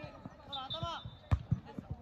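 Players' shouts on a football pitch, with a sharp thud a little over a second in and two softer knocks after it.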